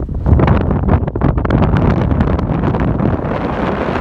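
Gale-force wind of at least 40 mph buffeting a phone's microphone: loud, gusty, unbroken wind noise with a constant low rumble and rapid flutters.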